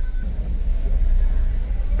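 Steady low rumble of a cargo van's engine and road noise, heard from inside the cab in slow city traffic, getting a little louder a quarter of a second in.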